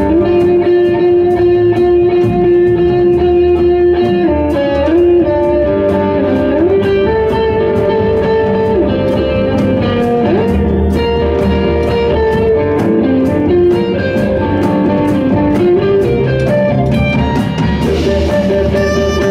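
Live jazz quartet of tenor saxophone, cello, guitar and drums playing a slow piece: long held melody notes, some sliding in pitch, over guitar and a steady drum pulse.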